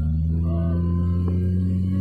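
Suzuki Sidekick-family SUV's four-cylinder engine droning at a steady speed, heard from inside the cab, with a faint higher whine that rises slowly.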